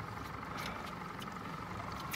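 Boat's outboard motor idling with a steady low hum.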